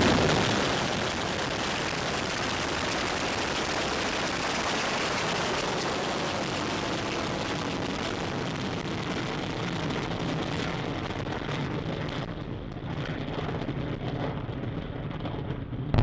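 A space rocket lifting off, its engines heard from afar as a steady, even rumble with hiss. The sound eases slightly after the first second and grows duller and a little quieter over the last few seconds as the rocket climbs away.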